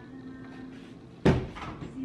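A single sharp knock in the kitchen about a second in, over quiet background music.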